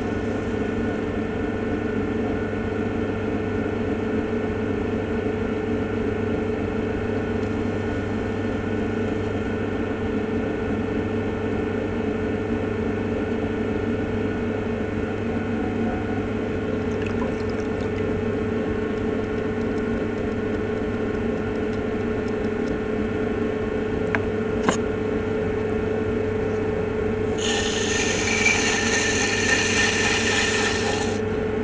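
An electric potter's wheel motor runs with a steady hum as wet clay is thrown on it. Near the end a louder scraping hiss comes in as a rib is held against the spinning clay wall to smooth it.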